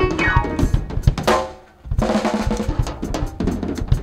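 Live band playing instrumental music, led by a drum kit with bass drum and snare hits under sustained keyboard chords. The music breaks off briefly about a second and a half in, then comes back in with a drum hit.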